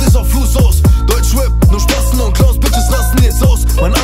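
Hip hop track playing loudly, its beat carried by deep bass notes that slide downward, with rapped vocals over it.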